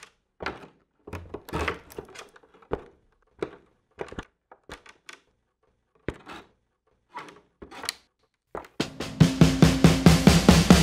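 Sparse, irregularly spaced percussive hits and knocks with silence between them, then about nine seconds in a full rock band comes in with drums, bass and guitar.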